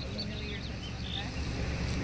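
Steady low vehicle engine rumble, with faint voices in the background.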